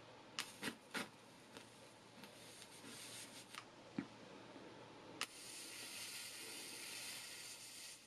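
Small clicks of a flexible-neck candle lighter being handled and triggered, three in the first second and one at about four seconds. About five seconds in, a sharper click is followed by a steady hiss lasting nearly three seconds as the lighter is held lit toward a wick.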